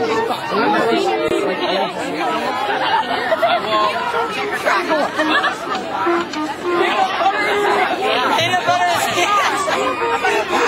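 Chatter of a group of teenagers: many voices talking over each other, with laughter, steady throughout.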